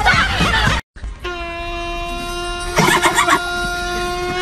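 After a brief dropout, a single steady pitched tone with many overtones comes in and holds unchanged for about three seconds, with a short burst of voices over it partway through.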